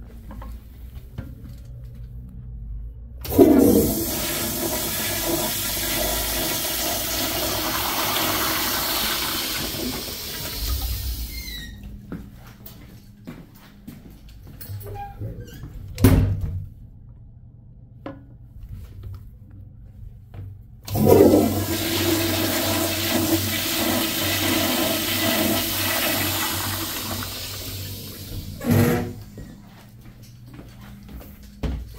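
Two flushes of vintage Crane toilets with chrome flushometer valves. Each is a loud rush of water lasting about eight seconds, the first starting a few seconds in and the second just past the middle. A sharp knock falls between them, and a short thump comes near the end.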